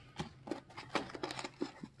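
Foam packing inserts and small bagged kit parts being handled by hand, making irregular light rustles and clicks.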